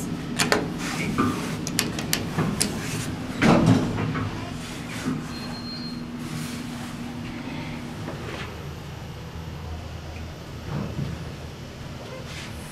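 Elevator car buttons clicking as they are pressed, then a louder thud about three and a half seconds in, and the steady low hum of the older Otis elevator car running.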